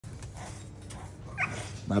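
A dog in a kennel pen gives one short, high-pitched cry about one and a half seconds in, over a low background.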